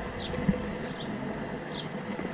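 Quiet outdoor ambience with a faint, steady buzzing hum and a single soft footstep on stone steps about half a second in.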